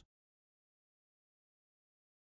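Digital silence: the sound cuts out completely between spoken words.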